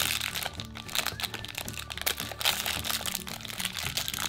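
Shiny foil blind-bag wrapper of a Disney Doorables figure being torn open and crumpled by hand: a dense, irregular run of sharp crackles and crunches, over background music.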